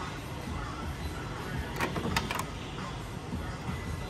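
Background music playing, with a quick cluster of four or so sharp metallic clicks about two seconds in, the sound of a car's body latch being worked.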